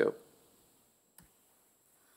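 A single short click about a second in, in near silence: a key press or presenter clicker advancing the slide. The tail of a spoken word ends just as it begins.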